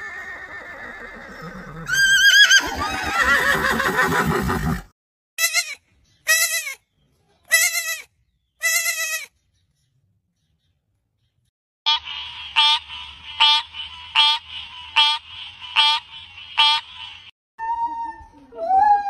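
A horse whinnies loudly about two seconds in, and four short calls follow. After a pause, a young goat bleats over and over in a quick series for about five seconds.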